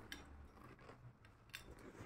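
A few faint metallic clicks from a Kinoshita two-inlet gas torch being handled, fingers on its valve knobs, over near silence.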